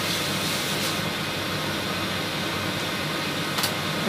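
Steady room noise, an even hiss with a low hum like an air conditioner running, and a light click near the end.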